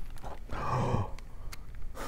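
A page of a picture book being turned by hand, with faint paper clicks, and a soft breathy sigh about half a second in.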